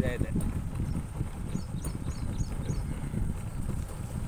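Wind rumbling and buffeting on the microphone, with a quick run of about five short, high chirps from a small bird a little before halfway.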